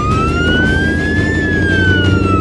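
Cartoon ambulance siren sound effect: one slow wail that rises in pitch, peaks a little past halfway, then starts to fall, over a low steady rumble.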